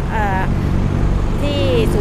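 A man speaking Thai, with a steady low engine-like hum running underneath.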